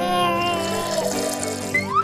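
Liquid pouring from a small plastic blender jug into a plastic cup, over background music.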